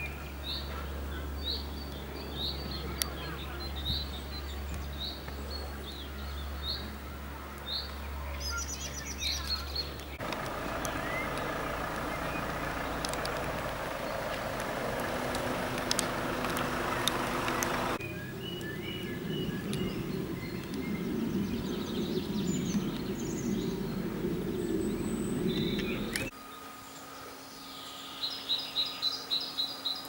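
Outdoor ambience with small birds chirping repeatedly over a steady background, with a low hum in the first third. The background changes abruptly three times, and the last few seconds hold a steady hum with a quick run of chirps.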